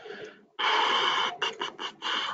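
Bursts of noise coming through the call's microphone line: one lasting about a second, then three short ones in quick succession.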